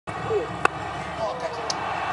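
A cricket bat striking the ball once, a sharp crack about two-thirds of a second in, over the steady noise of a stadium crowd.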